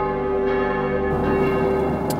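A single bell chime ringing with many overtones: the upper tones stop about a second in, while the main tone lingers and fades near the end, over a low steady hum.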